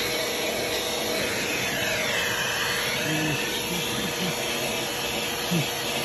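Vacuum cleaner running steadily, its hose and brush attachment working over a car's dashboard. Its pitch dips and rises again briefly about two seconds in.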